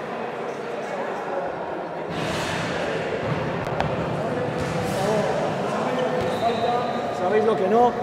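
Indistinct voices echoing in a large sports hall, with two brief bursts of rustling noise and a single sharp knock about four seconds in. A man's voice comes in close near the end.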